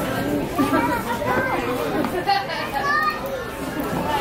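Several voices talking over one another in indistinct chatter, some of them high-pitched.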